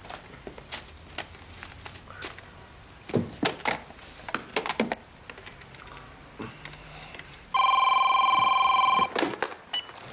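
A telephone rings once: a steady electronic trill lasting about a second and a half, starting about seven and a half seconds in, the loudest sound here. Before it there are only a few soft clicks and small handling noises.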